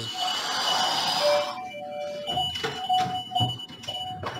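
A long angry sigh lasting about a second and a half, followed by a doorbell ringing repeatedly over soft background music.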